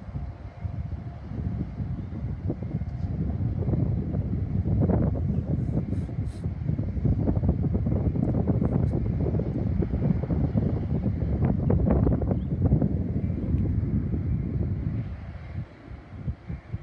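Wind buffeting the microphone in an uneven low rumble, over the fading rumble of a Metra commuter train pulling away. The rumble drops off sharply near the end.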